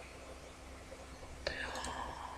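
Low steady hum of the recording, then about one and a half seconds in a small click and a faint whisper-like breath from the speaker.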